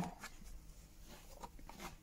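Quiet room tone with a few faint, soft clicks.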